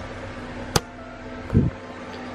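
Handling noise from a plastic gauge cluster being turned over in the hands: one sharp click about a third of the way in and a short low thump near the end, over a steady low hum.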